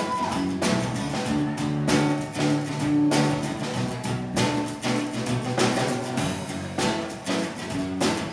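Live band playing an instrumental intro: strummed acoustic guitar over electric bass and drum kit, with sharp strummed or struck beats throughout.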